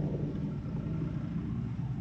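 Distant diesel passenger train moving away down the line: a low, steady rumble.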